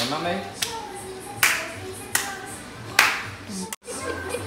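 Hand claps, five of them spaced roughly three-quarters of a second apart, over a background song; the sound drops out briefly near the end.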